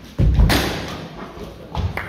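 Fencers' feet thudding and stamping on a wooden floor during a historical sabre exchange, with a loud, sharp impact about half a second in and another thud near the end.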